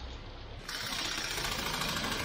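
Diesel engine of a concrete mixer truck idling steadily, a low rhythmic hum. About half a second in, it gives way abruptly to a steady hiss.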